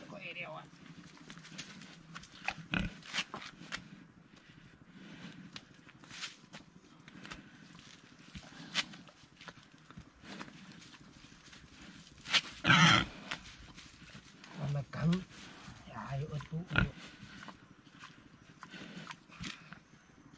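Domestic pig grunting intermittently while held on a rope, with one louder, longer cry about two-thirds of the way through. Scattered short clicks run throughout.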